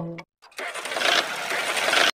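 Background music cuts off, and after a brief silence a small motor starts up and runs with a rough, noisy sound.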